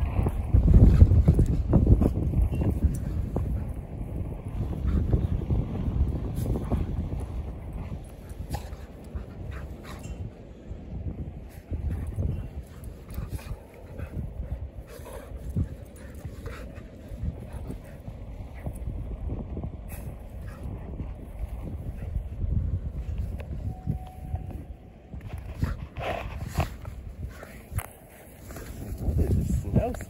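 Two dogs play-fighting in snow, making dog sounds as they wrestle, with a low rumble of wind on the microphone loudest in the first several seconds.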